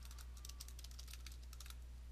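Computer keyboard typing: a quick run of faint key clicks that stops just before the end, over a low steady hum.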